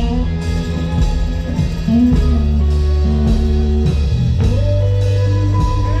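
Live rock-soul band starting up together: drum kit keeping a steady beat under electric guitar and deep, held bass notes.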